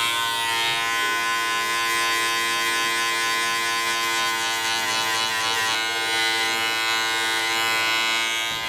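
Wahl Senior hair clipper running with a steady buzz, its blade set to zero, tapering short hair at the nape of the neck.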